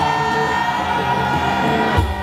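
Live band music played loud over a festival PA, recorded on a phone from the crowd: long sustained notes held like a drawn-out chord, with little beat.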